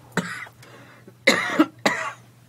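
A woman coughing three times into her hand.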